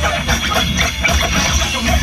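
Loud DJ music with a heavy, pulsing bass beat played over a sound system for breakdancers.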